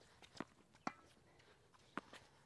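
Tennis ball struck softly with a racket and bouncing on a hard court during a slice drop-shot rally: a few sharp, quiet taps, the clearest about half a second apart early on and another near the end.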